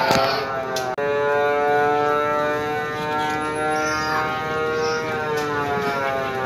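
Carousel music of long held chords, the chord changing about a second in.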